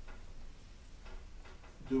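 A pause in a man's speech: low room tone with a few faint ticks, then his voice resumes right at the end.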